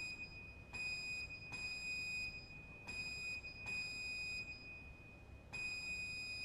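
Barrel organ sounding a single very high pipe note, a thin whistling tone held in several pulses of about three-quarters of a second each, in a quiet passage with no lower pipes.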